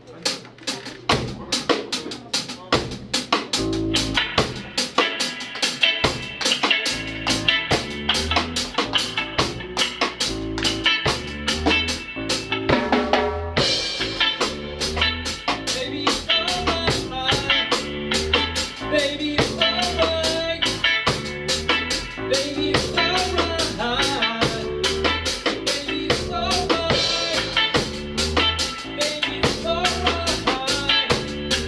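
Live band playing a reggae song: a drum kit with rimshots and bass drum keeps a steady beat under electric guitars and bass. The bass comes in a few seconds in, and the cymbals grow brighter about halfway through.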